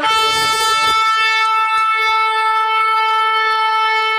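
One long horn blast: a brief lower note slides up into a single steady, bright note, held for about four seconds before it cuts off suddenly.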